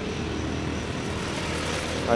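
A vehicle's engine running, a steady low rumble with a hiss.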